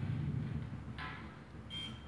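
A single short, high electronic beep near the end from a card-reader task box, heard through a TV speaker. A brief burst of hiss comes about a second before it.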